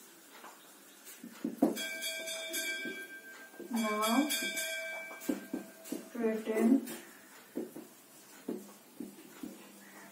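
Whiteboard marker writing, with sharp taps as the pen strikes the board, while a woman says a few words slowly. A steady tone at several pitches sounds in the background for about four seconds near the start.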